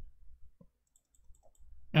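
A few faint clicks of a computer mouse, about half a second and a second and a half in, over a quiet room.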